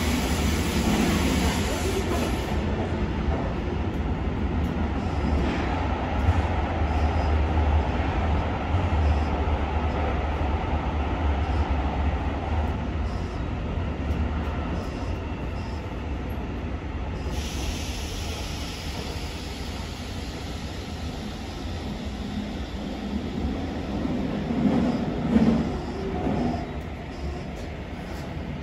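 Interior running noise of a Kyoto Subway Karasuma Line 20 series train: a steady low rumble of the car on the rails. It grows gradually quieter through the second half, with a brief louder rise about 25 seconds in.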